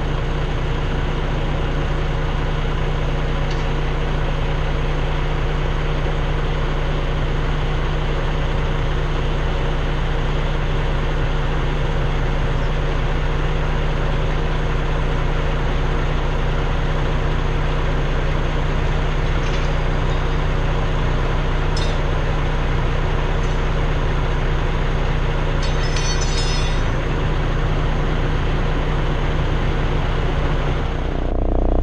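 Semi truck's diesel engine idling, a steady unchanging hum, with a few faint clinks, the clearest about two-thirds of the way through.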